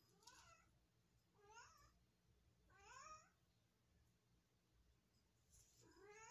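A domestic cat meowing faintly, four short meows, the last near the end.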